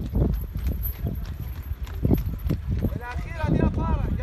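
Horse hooves clopping on hard ground in an irregular run of knocks, with a person's voice starting up about three seconds in.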